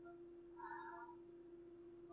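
Near silence: a faint steady hum, with one brief faint high-pitched sound about half a second in.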